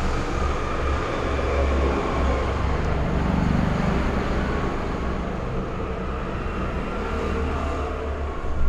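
Steady low rumble with a hiss of continuous background noise, without distinct events.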